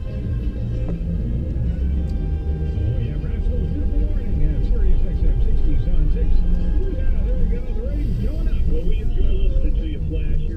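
Car radio playing a song with a voice over it, heard inside the cabin over the low, steady rumble of the vehicle on the road.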